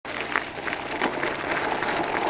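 Kick scooter pulled by two dogs rolling over a gravel road: a steady crackling hiss of the wheels on gravel, with a few sharp clicks.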